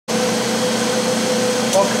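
Steady hum and rush of running lab equipment and air handling, with a constant mid-pitched tone throughout.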